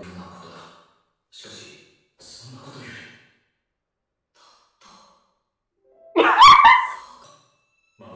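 Faint, brief snatches of voice. About six seconds in comes one loud vocal outburst, rising in pitch and fading within about a second.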